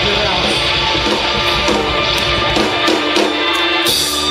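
A live band plays loud, guitar-driven music through the PA. The deep bass drops away about three seconds in.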